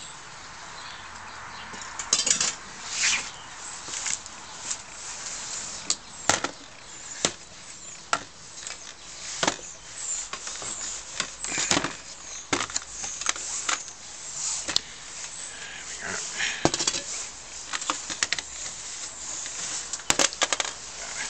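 Irregular knocks and clinks as an old Optimus 415 paraffin blowtorch and its small metal parts are handled and set down on a metal sheet on a workbench, with a cloth rustling around it.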